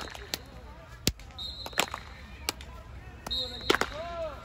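Several sharp smacks at irregular intervals, like hands striking football pads, over faint background voices.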